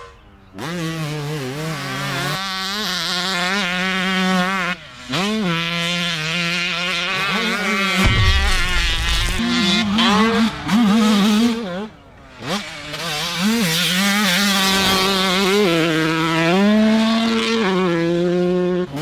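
Dirt bike engine revving hard, its pitch climbing and dropping again and again as the rider twists the throttle and shifts gears. A brief low rumble comes about eight seconds in.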